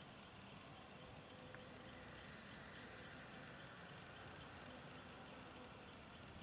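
Faint, steady high chirring of night insects, a continuous rapid trill.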